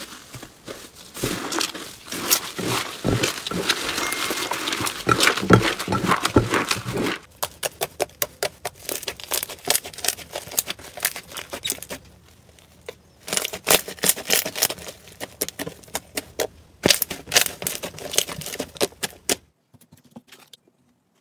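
Hands squishing and kneading slime, giving a dense run of crackling clicks and pops as air pockets burst. The crackling thins out about seven seconds in, dips into a short lull past the middle, then comes back thick again.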